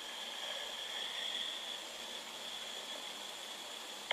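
Steady background hiss with a faint, constant high-pitched whine: the recording's noise floor in a pause between speech.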